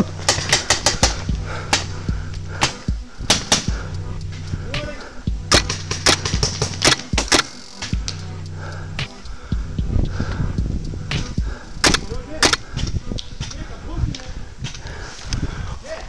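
Magfed paintball markers firing irregular shots across the field, single pops and quick strings of two or three, over a steady low hum.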